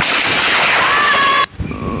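Cartoon sound effect of the ground caving in: a loud crash of collapsing earth and debris that cuts off suddenly about a second and a half in.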